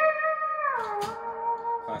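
E9 pedal steel guitar chord ringing, gliding smoothly down in pitch partway through and settling on a lower chord that sustains and fades: the closing pedal-and-slide lick of the solo.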